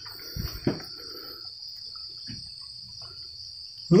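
Crickets chirping as a steady, unbroken high trill. Two short light knocks come in the first second.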